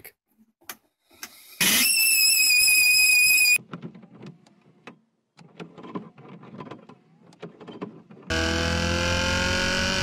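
Heater blower fan of a Mercedes-Benz 240D letting out a loud, steady high-pitched whistle for about two seconds, then cutting off suddenly. Near the end a car engine revs, its pitch rising.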